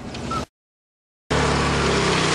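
4x4 Dodge Caravan's engine running. It breaks off into a moment of dead silence at an edit cut, then comes back running steadily under a loud rushing hiss.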